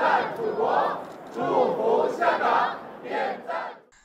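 A large group of young people shouting together in unison, several short cheering phrases one after another.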